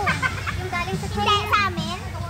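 High-pitched voices, in two short spells of calling with rising and falling pitch, the second a little after the first second and the louder of the two.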